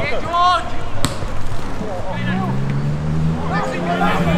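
Footballers' shouts across the pitch, with one sharp thud of a football being kicked about a second in. A low steady hum comes in halfway through, under further shouts.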